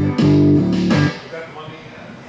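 Electric guitar playing its final notes through a small amplifier: a last chord is struck about a quarter second in, rings briefly, and is cut off about a second in, leaving faint room sound.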